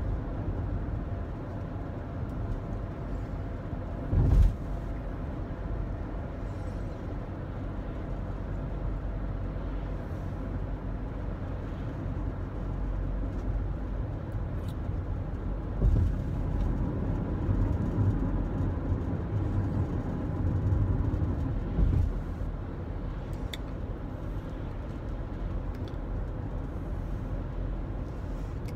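Road noise inside a moving car's cabin: a steady low rumble of engine and tyres on the road. A few short low thumps stand out, the loudest about four seconds in.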